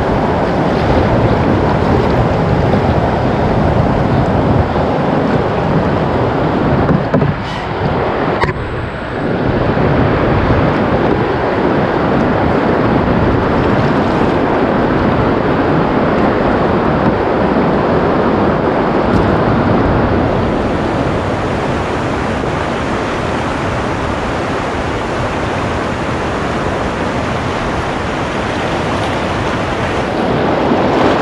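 Fast river current rushing past a canoe hull, with wind buffeting the microphone. A couple of sharp clicks come about seven to nine seconds in.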